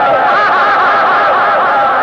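A high-pitched vocal cry from the film's soundtrack, held without a break, its pitch quivering several times a second.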